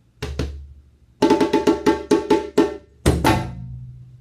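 Djembe and dunun drums played in a short broken phrase: a single stroke with a low boom, a pause, then a quick run of sharp strokes about six a second, and a heavy low drum hit about three seconds in that rings on.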